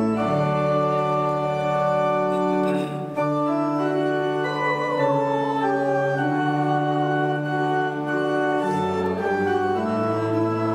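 Church organ playing a hymn in slow, sustained chords that change every second or two.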